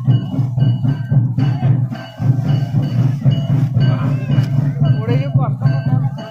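Festival music led by steady drumming, with voices calling and singing over it about four to five seconds in.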